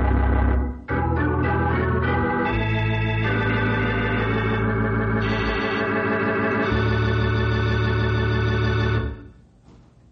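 Organ music cue of held chords that change every second or two, with a brief break just under a second in, dying away about nine seconds in.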